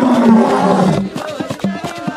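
A group of men singing together and clapping their hands in a steady rhythm; a loud, long held sung note fills the first second, and the claps come through more clearly in the second half.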